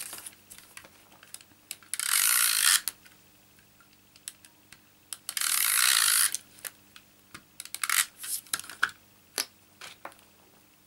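Adhesive tape runner (Stampin' Up! SNAIL) drawn along the back of a strip of patterned paper twice, each stroke a rasping hiss lasting under a second. Light clicks and taps follow as the paper is handled and pressed into place.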